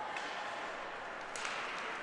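Faint, steady ice rink ambience during live play, a low hiss of skating and on-ice noise.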